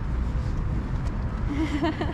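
Wind buffeting a handheld camera's microphone: a loud, uneven low rumble. A brief voice comes in near the end.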